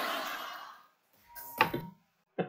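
Studio audience applause fading out, then a brief gap and a short sharp thump about one and a half seconds in.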